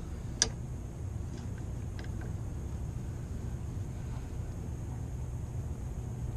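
A few light metallic clicks, the clearest about half a second in, as wrenches on the steel fuel line nut and the fuel filter fitting are worked to tighten the connection. A steady low hum runs underneath.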